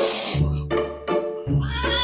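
Background music with a steady beat and bass line, and a cat meow starting near the end.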